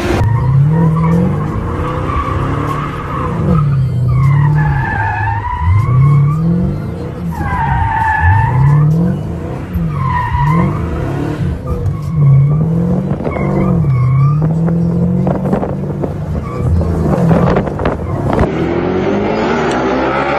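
A car engine revving up and down over and over, with tyres squealing in a run of wavering screeches through the middle seconds, heard from inside the car.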